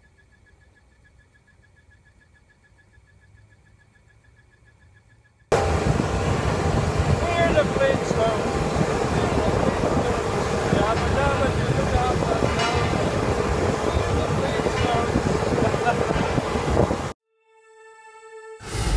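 Quiet room tone with a faint steady high tone. About five seconds in, a loud, dense mix of voices and music starts abruptly, typical of a busy shop, and about a second before the end it cuts off to silence.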